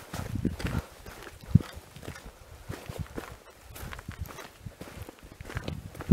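Irregular footsteps and scuffs on a dry, stony mountain trail, with one louder thump about a second and a half in.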